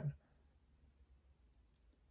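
Near silence: room tone, with a couple of faint clicks about one and a half seconds in.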